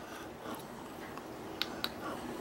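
Quiet room tone with a faint steady hiss, and two small sharp clicks close together about a second and a half in.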